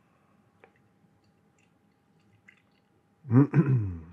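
Stout poured from a can into a tilted glass, almost inaudible apart from a couple of faint clicks. Near the end a man clears his throat loudly.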